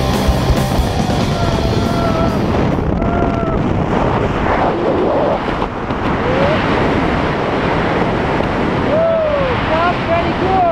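Wind rushing over an action camera's microphone during a tandem parachute descent under an open canopy. Brief voice calls and exclamations come through the wind, most clearly near the end, and rock music trails off at the very start.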